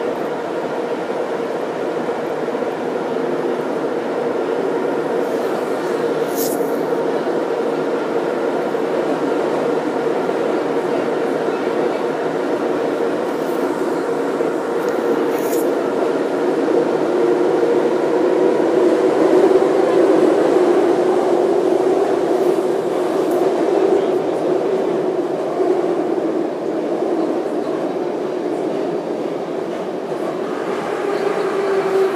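Moscow metro train running between stations, heard from inside the carriage: a steady rumble with a held hum that swells a little in the middle, and two brief high hissing sounds in the first half.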